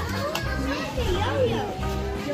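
Children's voices talking and exclaiming, unclear, over background music with a repeating bass line.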